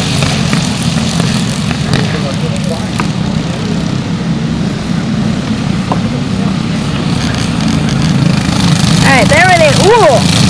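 A pack of racing karts with Briggs & Stratton LO206 single-cylinder four-stroke engines running around the track together, a steady drone. A voice is heard near the end.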